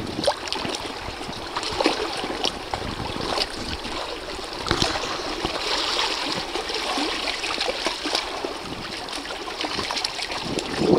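Lake water lapping and trickling against the rocks and boat, with many small splashes and ticks scattered through.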